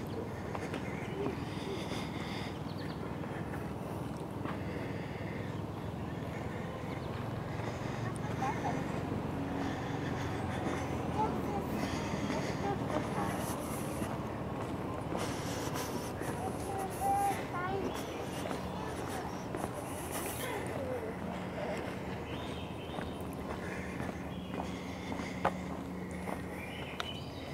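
Footsteps on the wooden planks of a footbridge over a steady outdoor background noise, with faint indistinct voices in the middle.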